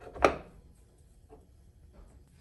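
A single sharp knock about a quarter second in, with a short ring, then a few faint clicks: a servo motor being set against the metal housing of a CNC rotary 4th axis as it is fitted.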